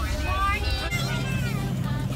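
Children's voices inside a coach bus over the low, steady hum of the bus engine running, the hum growing stronger about a second in.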